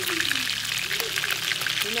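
Catfish pieces frying in hot oil in a pan: a steady crackling sizzle.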